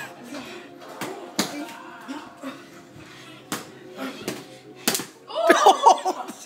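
Boxing gloves landing punches during play-sparring: four or five sharp, separate smacks a second or more apart, with voices breaking in near the end.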